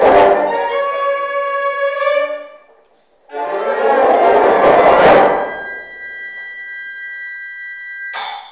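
Concert band playing the closing chords of a piece. A loud held chord dies away, and after a brief pause about three seconds in a final loud full-band chord sounds. It leaves a quieter high note held on to the end.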